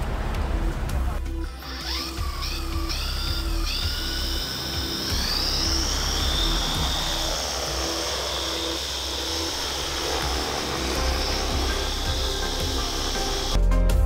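Doosan DS30 multirotor drone's electric rotor motors spinning up with a whine that rises in short steps, then climbs again and holds steady as the drone lifts off and hovers, under background music. Near the end the sound cuts to a louder low rush under the music.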